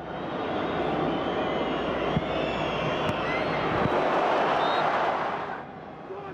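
Stadium crowd noise swelling as a chance goes in on the goalkeeper, loudest about four to five seconds in and then fading, with a few scattered whistles and a couple of dull thumps.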